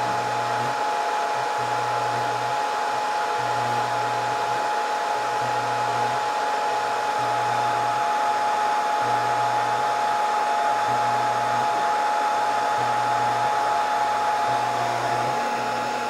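Scotle IR360 rework station's hot-air blowers running steadily while the board preheats in a reflow profile: an even rushing-air noise with a steady high whine. A lower hum cuts in and out every second or two.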